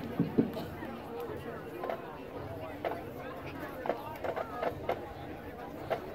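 Spectators in a stadium crowd chatter at a low murmur, with a few faint sharp clicks scattered through it.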